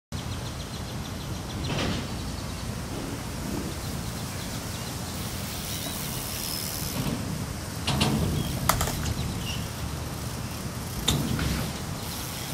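Steady outdoor background noise with a low rumble, broken by a few short sharp clacks: one about two seconds in, a couple around eight to nine seconds, and one about eleven seconds in.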